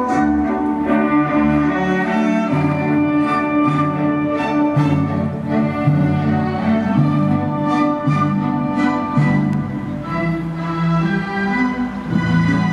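Orchestral music led by bowed strings, with sustained notes moving over a low bass line.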